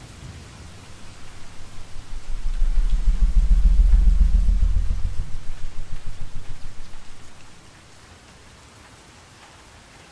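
Steady rain with a long, low roll of thunder that builds about a second in, is loudest for a couple of seconds, then dies away, leaving only the rain.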